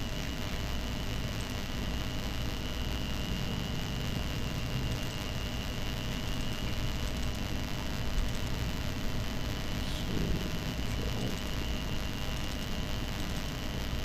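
Steady background hiss and low hum with a faint constant high tone, like room or equipment noise on a meeting recording; no distinct event stands out.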